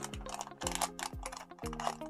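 Background music with a steady beat, about two beats a second. Under it, the crinkle and rustle of a small plastic packet being opened by hand.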